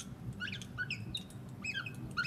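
Felt-tip marker squeaking on a glass lightboard as a word is handwritten: a quick series of short, high squeaks, several sliding in pitch.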